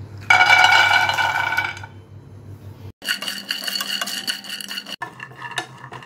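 Whole cashews tipped from a steel measuring cup clatter into an empty non-stick frying pan about a third of a second in, with a ringing tone that fades over a second or so. From about three seconds in, a dense rattle of cashews being stirred as they dry-roast in the pan, broken by a brief cut.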